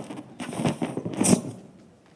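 Hands rubbing and pressing a large rubber balloon, giving irregular creaking, rustling bursts that stop about one and a half seconds in.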